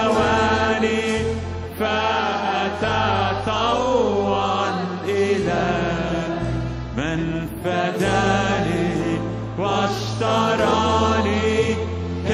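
A worship team singing an Arabic hymn together over a keyboard that holds sustained low chords. The phrases flow on without a break.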